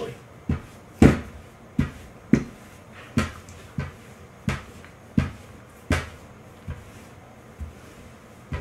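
Rolling pin working dough back and forth on a wooden butcher-block counter, giving a dull knock at each stroke. There are about eleven knocks, roughly one every two-thirds of a second, and the loudest comes about a second in.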